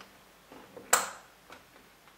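A sharp plastic click about a second in, with a fainter tick after it: an RJ45 patch lead being plugged back into the LAN port at the back of a Mitel MiVoice 5312 desk phone, re-plugged to reboot it.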